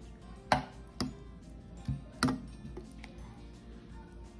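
A metal spoon stirring thick dal in a bowl, clinking against the bowl four times in quick, uneven strokes.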